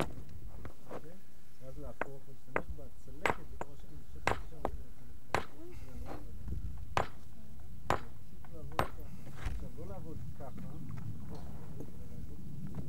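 Hard hammerstone striking a large flint nodule, knocking off large flakes: about ten sharp, ringing cracks at uneven intervals, roughly a second apart.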